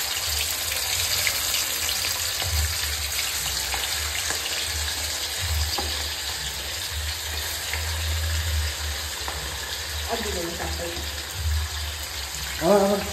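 Fish pieces sizzling steadily as they shallow-fry in hot oil in a steel kadai.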